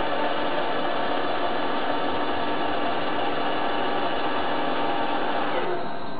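Baileigh RDB-250 electric rotary draw tube bender running under load as its die turns and wraps an aluminium tube into a bend, a steady motor-and-gear whine. Near the end the pitch drops and the drive stops as the bend reaches its programmed angle.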